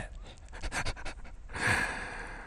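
A man's breathy laughter: a quick run of short huffing breaths, about eight a second, then a longer exhale near the end.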